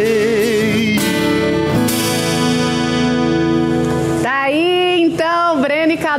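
Two male singers with acoustic guitars finishing a song live: a sung note with vibrato, then a long held final chord that ends about four seconds in.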